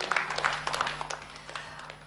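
Faint scattered audience clapping, fading away.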